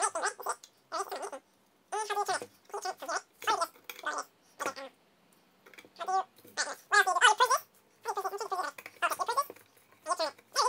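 High-pitched, voice-like sounds in quick short bursts with a gliding pitch, with no words that can be made out.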